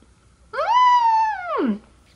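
A woman's long, high-pitched hummed "mmm~" of delight at her first taste of soft-serve ice cream. It rises, holds, and then slides down in pitch near the end.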